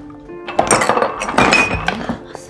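Glassware clinking and clattering at a bar, loudest in two bursts under a second apart, one leaving a short ringing glass note; background music continues underneath.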